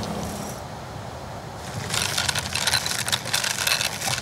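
Plastic bubble wrap crinkling and crackling as it is handled close to the microphone, starting about halfway through after a quiet stretch.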